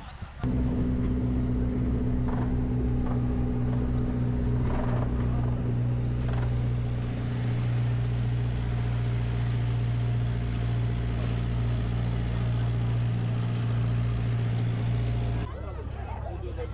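Engine of an open-sided tourist tram running with a steady, even hum, starting abruptly about half a second in and cutting off just before the end.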